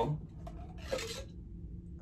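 A tube sliding up and off a soda bottle, with a soft rubbing scrape near the start and another about a second in.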